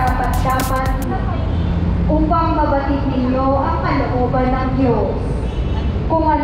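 A woman's voice in long, drawn-out melodic phrases, over a steady low rumble.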